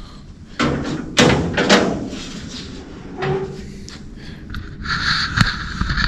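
Door and body knocks of a Model A Ford coupe as a person opens the door and climbs into the cab: a few sharp bumps in the first two seconds, a softer one a little later, and a rattle with a sharp click near the end.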